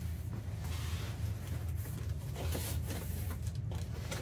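Cardboard boxes and packing being handled and rummaged in a shipping carton: scattered short knocks, scrapes and rustles as small boxed kits are lifted out, over a steady low hum.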